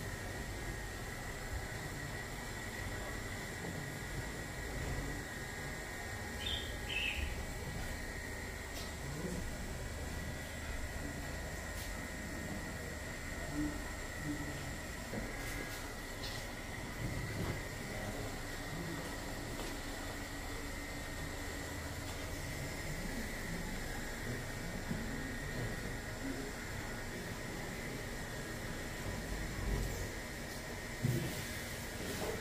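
Steady room ambience of a barbershop: a constant high-pitched whine and a low rumble, with a few faint clicks now and then.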